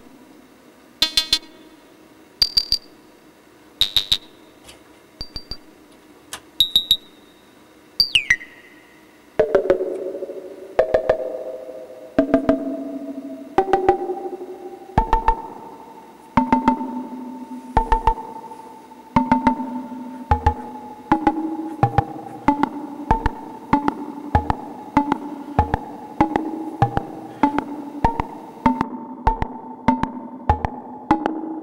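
Eurorack modular synthesizer playing a sequence of short percussive notes, made by ring modulation through an Abstract Data Wave Boss bipolar VCA. A few sparse hits come first, one with a quick falling sweep about eight seconds in. From about ten seconds in, a steadier run of pitched, decaying hits follows at about two a second.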